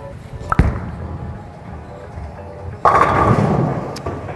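Ten-pin bowling ball delivered onto the lane with a sharp thud about half a second in, rumbling as it rolls, then a loud clatter of pins being struck about three seconds in.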